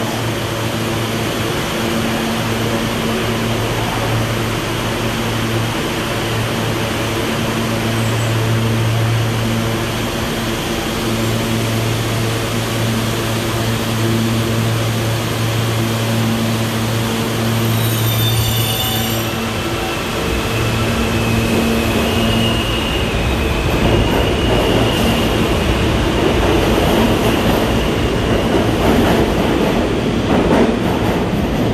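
New York City subway train at an underground station: a steady electrical hum from a train standing at the platform. About two-thirds of the way in, the hum gives way to the rising rumble of a train moving along the track, with a high, drawn-out wheel squeal.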